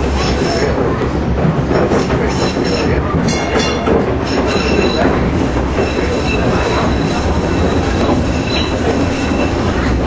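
Electric trolley car running along its track, heard from inside the car: a steady rumble of wheels on rail, with a thin high wheel squeal coming in through the second half.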